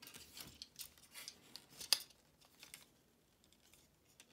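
Faint, scattered clicking of a plastic action figure's ratcheted hip joints as a leg is swung forward, mixed with the rattle of the figure being handled. The clicks thin out in the last second.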